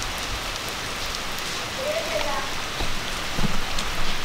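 Steady rain falling on a wet paved street.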